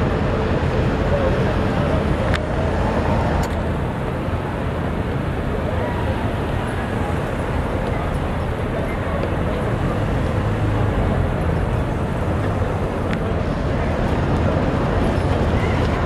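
City street traffic noise: cars running past with a steady road rumble, with indistinct voices of people on the sidewalk mixed in.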